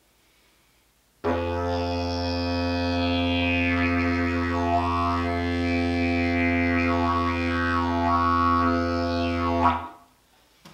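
A black pipe didgeridoo with a small flared bell, blown in a steady low drone with a rich stack of overtones whose upper part shifts as the player's mouth shapes the sound. The drone starts about a second in and stops abruptly just before the end.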